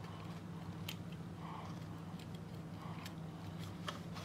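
Faint clicks and rustles of hands handling a plastic phone jack and its wires, a few sharp ticks spread through, over a steady low hum.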